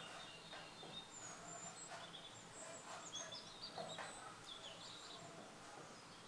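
Faint birdsong: short, high chirps and twittering calls, with a few soft taps over a low background hush.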